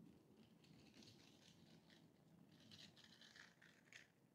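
Near silence: room tone with faint rustling from a plastic Lego train being handled, a little stronger about two and a half to three and a half seconds in.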